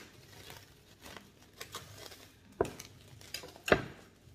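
Plastic cling wrap rustling and crinkling as it is peeled off a bowl of raw chicken, then two sharp knocks near the end, the second louder, as the ceramic bowl is set down on a wooden cutting board.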